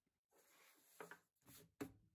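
Faint rustling and sliding of watercolour paper, a pad of sheets being shifted about by hand on a desk, with a few short separate rustles in the second half.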